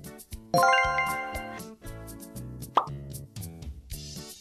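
Light background music with added sound effects: a bright, ringing chime with a quick upward swoop about half a second in, the loudest sound, then a short plop near the three-second mark.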